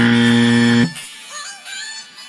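A loud, steady electronic tone, buzzer-like and flat in pitch, cuts off suddenly under a second in. Background pop music with processed vocals runs beneath it and carries on afterwards.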